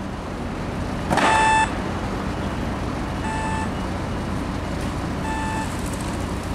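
Pedestrian crossing sounder giving three short beeps about two seconds apart: the slow beep that means wait while the red man shows. Steady street traffic noise runs underneath.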